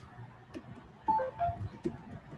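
Computer keyboard keys clicking a few times as text is typed, with a cluster of brief beeps at different pitches about a second in.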